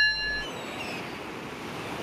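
A held ringing tone ends about half a second in, giving way to a steady rushing noise that swells slightly toward the end.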